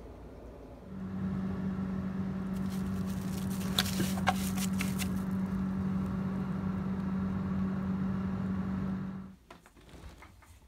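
A steady motor hum with one clear pitch. It starts about a second in and cuts off suddenly near the end, with a few sharp clicks and rustles about four seconds in.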